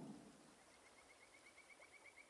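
Near silence: a pause between spoken sentences, with only faint room tone.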